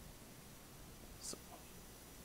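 Quiet room tone with a faint, distant voice, like a whispered or murmured remark from the audience, about a second in.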